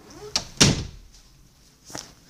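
A door shutting: a light click, then a loud thud about half a second in, and a smaller click near the end.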